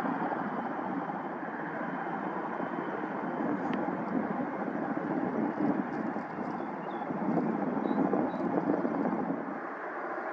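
Twin jet engines of a CF-18 Hornet running at low power as the jet rolls along the runway, a steady rough rumble that swells a little about eight seconds in and eases near the end.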